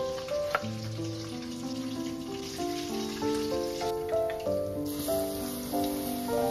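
Background music with gentle, steady melodic notes over oil sizzling as food deep-fries in a pan. The sizzle is brighter and clearer in the second half.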